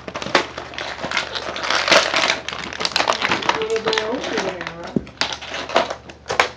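Plastic toy packaging crinkling and rustling close to the microphone, with sharp crackles and clicks, as an action figure is worked out of it.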